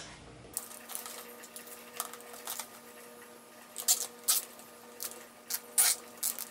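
Scattered sharp plastic clicks and light rattles from zip ties being threaded and pulled tight to fasten a plastic power strip to a perforated plastic chair seat, the loudest clicks about four seconds in and near the end. A faint steady hum runs underneath.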